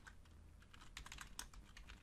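Faint keystrokes on a computer keyboard: a scattering of quick, irregular taps as a word is typed.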